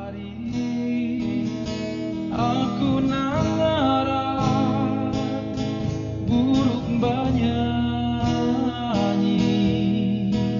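Acoustic cover music: acoustic guitar playing under a melody line that glides smoothly between notes.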